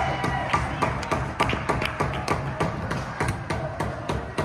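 Music with a run of sharp, irregular taps and claps, a few a second, in an ice rink just after a goal.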